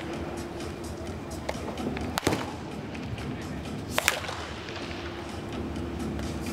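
Wooden baseball bat hitting pitched balls in a batting cage: two sharp cracks, about two seconds in and about four seconds in, over background music.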